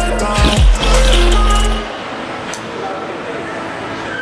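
Background music with a heavy, steady bass that cuts off abruptly about two seconds in, leaving a much quieter stretch.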